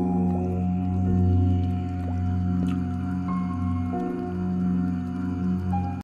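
Om meditation music: a low, steady drone with held higher tones above it that step to new pitches every second or so, and a few brief gliding tones.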